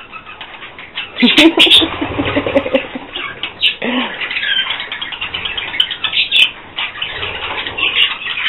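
A flock of budgerigars chattering and chirping close by, a busy stream of short warbles and squawks.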